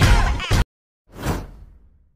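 Intro music cuts off abruptly about half a second in. After a short silence, a single whoosh sound effect sweeps downward and fades away.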